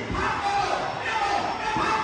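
Spectators in a large indoor fight stadium shouting and cheering together, with a low thud at the start and another near the end.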